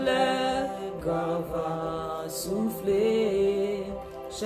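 A woman singing a slow worship song, holding long notes that glide gently from one pitch to the next.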